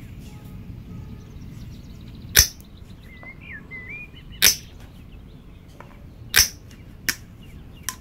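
Combination pliers' side cutter snapping through paracord: three sharp snaps about two seconds apart, then two fainter clicks near the end. Birds chirp faintly in the background.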